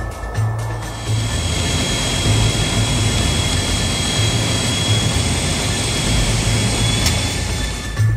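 The Transall C-160's two Rolls-Royce Tyne turboprop engines running on a steep landing approach: a steady rush with a thin high whine. Background music with a steady low beat plays over it.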